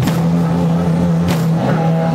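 Live rock band playing loudly: a low droning note is held throughout, with cymbal crashes from the drum kit at the start and again just over a second in.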